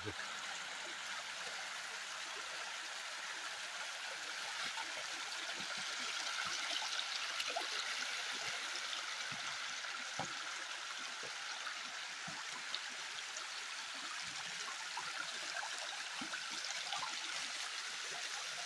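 Small mountain waterfall splashing down a rock face, a steady rush of falling water that grows a little louder midway. Faint scattered crunches of footsteps on dry grass and stones.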